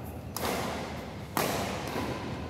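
Two badminton racket strikes on a shuttlecock during a doubles rally, about a second apart, each a sharp crack that rings on in the large hall.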